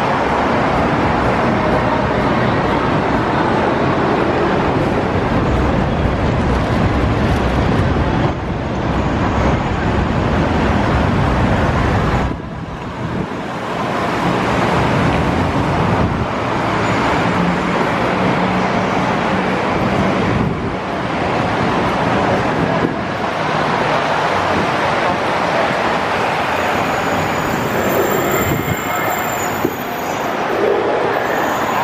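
Steady road traffic noise from passing vehicles, with a brief lull about twelve seconds in and an engine hum a few seconds later.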